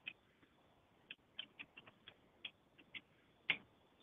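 Faint, irregular clicks of a computer keyboard as numbers are typed in, about ten keystrokes spread unevenly over the few seconds.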